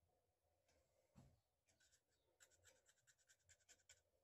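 Very faint paintbrush scraping and tapping against the inside of a small metal lid while stirring paint: a quick run of light scratchy ticks in the second half, after a soft knock about a second in.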